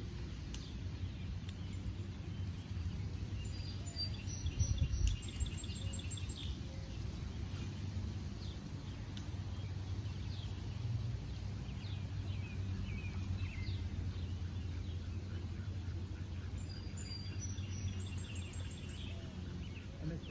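Songbirds chirping and trilling over a steady low background rumble, with a brief low thump about five seconds in.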